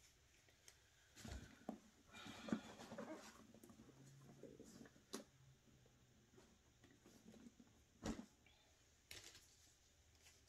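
Faint handling noise: soft rustling and a few light knocks and clicks, about four spread through, as a leather satchel and the things in it are moved.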